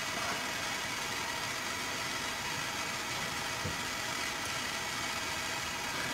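Propane hand torch burning with a steady hiss, the flame held on a lead jig head to heat it.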